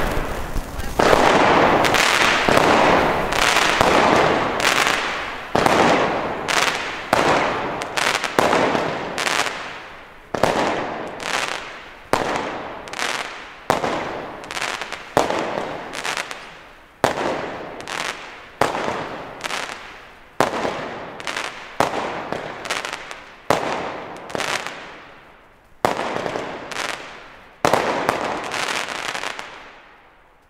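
Weco Sky Artist 19-shot firework battery firing: a long series of sharp bangs, about one a second, each fading away over about a second. The shots stop about two seconds before the end.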